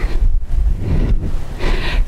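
Wind buffeting an outdoor microphone: a steady, loud rumble with a louder hiss near the end.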